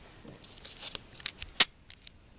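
A quick run of small clicks and rustling, the loudest a single sharp click about a second and a half in.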